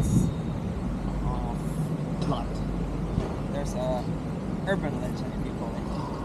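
Busy city street ambience: a steady low rumble of traffic, with snatches of people talking in the background.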